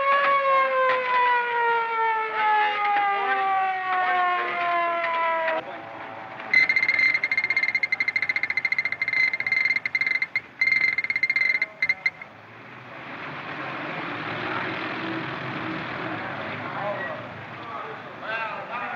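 A siren with a falling pitch winds down over the first five seconds or so. A shrill, fluttering high signal follows in a few blasts, and then a crowd of men murmurs.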